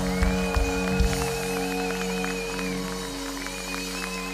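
Live rock band holding a sustained chord as a song ends, with a high wavering note above it; the drums drop out about a second and a half in.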